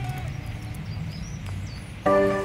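A few short, high bird chirps around the middle over a low, steady outdoor rumble.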